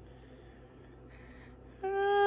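Quiet kitchen room tone with a faint low hum, then near the end a woman's voice holding a short, steady hum.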